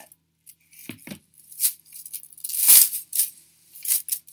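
Multi-strand gold-tone metal chain necklace jingling and rattling as it is handled, in a run of small clicks with the loudest clatter of chains about two and a half seconds in.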